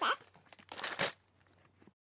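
Tissue paper rustling and crinkling as it is handled, in a couple of short bursts about a second in. The sound then cuts off abruptly to silence.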